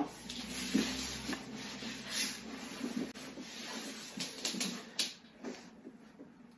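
Soft rustling and shuffling of a person getting down onto the floor in a small room, with a few light knocks scattered through.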